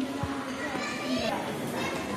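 Children's voices and chatter from people in a large indoor hall, with no clear words.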